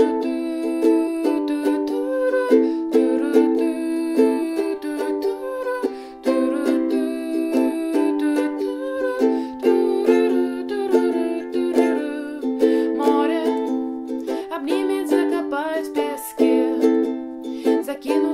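Ukulele strummed in a steady rhythm, playing the song's instrumental intro on the chords Am, G, C, G and F.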